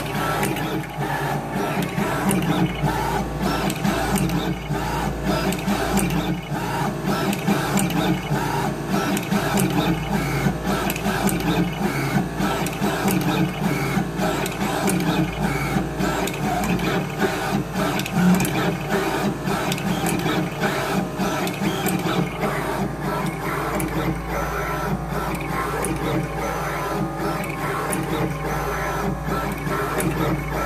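A CHMT36VA desktop pick-and-place machine running a placement job at 50% speed. Its head moves back and forth on the gantry with a steady whir and a dense run of quick clicks as the nozzles pick components from the tape feeders and place them.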